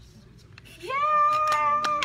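A high voice lets out one long held cry, starting about a second in, gliding up and then holding a single pitch for about a second. A couple of claps sound over it.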